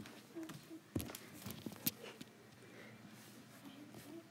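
Handling noise from a handheld tablet being swung about: a few sharp knocks and clicks, the loudest about a second in and just before the two-second mark, over a quiet room.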